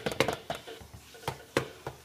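Plastic toy drum kit being tapped with a plastic drumstick in an irregular, childish rhythm: a quick run of taps at the start, then a few scattered single taps.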